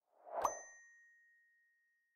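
A notification-bell sound effect: a short whoosh swelling into a single bright ding about half a second in, which rings out and fades over the next second and a half. It is the cue for a prompt to turn on the YouTube notification bell.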